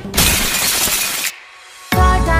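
A glass-shattering sound effect: a loud crash lasting about a second that cuts off sharply, followed by a short quiet pause. Background music with a steady beat starts near the end.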